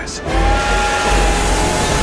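Steam locomotive sound effect: a steam whistle holds one steady chord for about a second and a half over loud hissing steam and a low rumble, starting a moment in.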